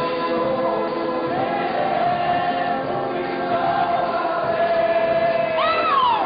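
Group of voices singing a song together. A held melody line slides in pitch, with a quick rise and fall near the end.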